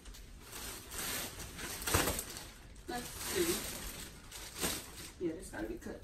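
Clear plastic wrapping on a new mattress rustling and crinkling as it is handled, with a sharp click about two seconds in and brief low voices.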